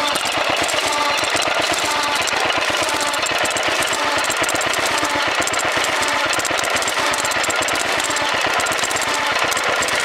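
Buzacott 2 HP single-cylinder stationary engine running steadily at about 450 RPM, a fast even clatter, as it drives an Ajax sludge pump through cast iron gears. Water gushes from the pump outlet.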